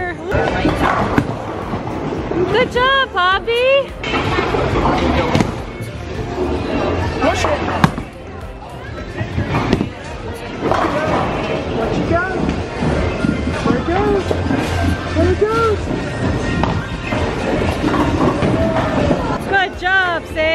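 A bowling ball rolling slowly down a wooden lane after being pushed off a children's ramp, with a steady low rumble. Sharp knocks and clatter from the alley are heard now and then, the loudest about 8 seconds in, over background music and voices.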